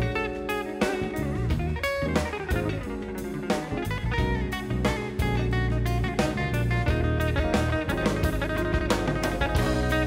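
Live big-band music with no vocals: an electric guitar plays lead lines over drum kit and bass.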